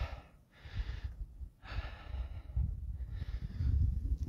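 A man breathing hard through the mic as he walks in deep snow, four long breaths with short gaps between them, over a low rumble.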